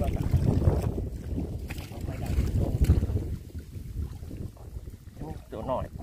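River water sloshing and churning around a wader's body and arms as he gropes by hand in the sandy riverbed, with wind rumbling on the microphone. It is busiest in the first three seconds, then dies down.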